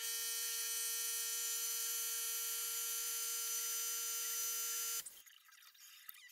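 A steady electronic buzz tone, one even pitch held for about five seconds, starting and cutting off abruptly.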